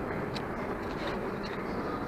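Steady background noise of a large shopping-centre hall, with a few faint ticks.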